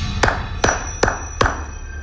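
Four sharp percussive hits, evenly spaced about 0.4 seconds apart, over background music.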